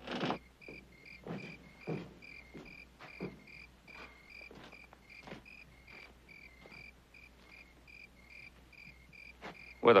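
Crickets chirping steadily at about three chirps a second, with slow booted footsteps thudding on wooden boards that are clearest in the first half.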